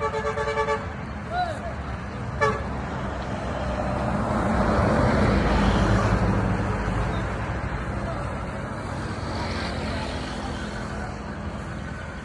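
A horn-like toot lasting under a second at the start, then a steady rushing noise that swells for a few seconds in the middle and eases off.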